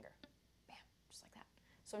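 Near silence, with a few faint breathy, whisper-like voice sounds and no guitar notes.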